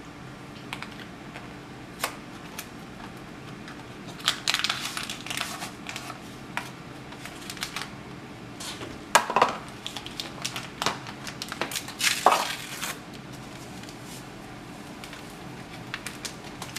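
A box of gelatin dessert mix and its inner paper powder packet being opened by hand: crinkling and tearing of the packet in short bursts, about four, nine and twelve seconds in, with scattered small clicks between.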